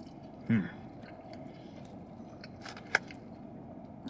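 Quiet chewing of a mouthful of chili cheese fries inside a car cabin, with a short hummed "hmm" about half a second in and a single sharp click near three seconds.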